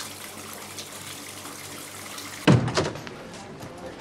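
Faint steady background noise, then a sudden loud thump about two and a half seconds in, followed by a short burst of clattering.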